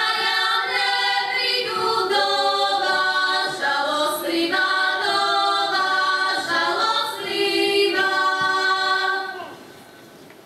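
Women's folk choir singing a Slovak folk song a cappella in harmony, in long held notes. The phrase ends about half a second before the end.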